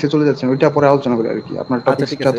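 A man talking over an online call, with a steady high-pitched tone running under his voice that stops just after the end.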